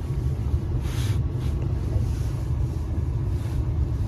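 Steady low rumble of background noise inside a car cabin, with a brief soft rustle about a second in.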